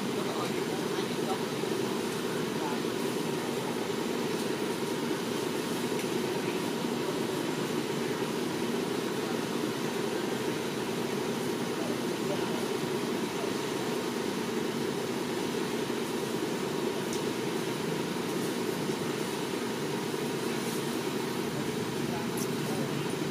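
Steady low-pitched background noise at an even level throughout, with no distinct calls or sudden sounds standing out.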